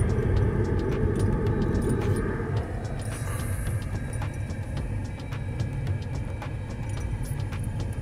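Cabin noise of a Jeep Wrangler Rubicon on 35-inch tyres driving over a cobbled road: a steady low rumble from the tyres and drivetrain with many small knocks and rattles as the wheels cross the stones.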